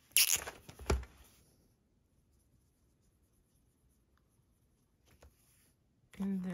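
Sharpie permanent marker uncapped: a sharp pop with a short hiss just after the start and a click about a second in. Then faint scratching of the felt tip colouring on a paper chart, with a couple of small clicks near the end.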